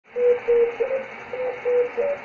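Morse code from the XW-2B satellite heard through a Yaesu FT-290R II receiver's speaker: short and long single-pitch beeps over a steady receiver hiss. The operator is retuning by hand to follow the signal's Doppler drift.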